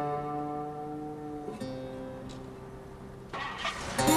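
Slow, spare slide guitar music: notes left ringing and slowly fading, a new lower note picked about a second and a half in, and a brief scrape near the end before the next phrase.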